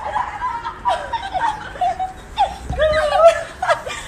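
High-pitched laughter and squealing from a small child and a woman, in short bursts that rise and fall, loudest about three seconds in.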